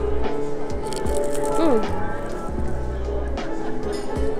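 Live piano music played close by and loud, with indistinct voices beneath it.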